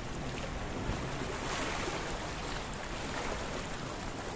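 Small sea waves washing and splashing in among shoreline rocks, a steady rush of water that swells a little about one and a half seconds in.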